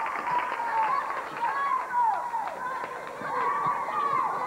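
Cheerleaders shouting a cheer together in high girls' voices, in short chanted phrases that rise and fall, with sharp hits scattered through it.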